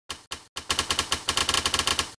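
Logo-intro sound effect of sharp clicks: two single clicks, then a fast, even run of about nine clicks a second.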